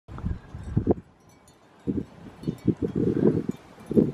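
Wind buffeting the camera microphone in uneven gusts, a low rumble that drops away for about a second and then comes back.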